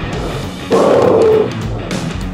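Background music, with a man's loud grunt of effort during a sit-up lasting most of a second, starting just under a second in.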